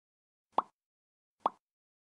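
Two short pop sound effects a little under a second apart, each a quick blip that bends upward in pitch.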